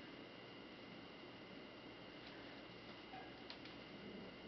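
Near silence: room tone with a faint steady high whine and a few faint ticks, two of them close together about three and a half seconds in.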